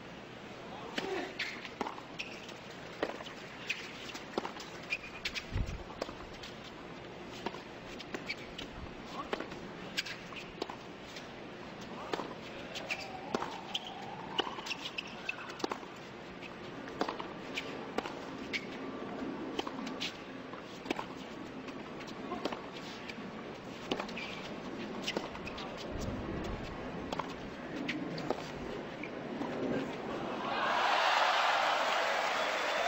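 A tennis rally on a hard court: repeated sharp pops of racket strings hitting the ball, irregularly spaced a second or two apart, over a low steady crowd murmur.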